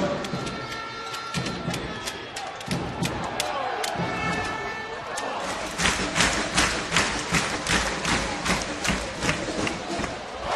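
Basketball game sound in an arena: crowd noise, with a ball being dribbled on a hardwood court in a steady run of bounces, about two to three a second, from a little past halfway.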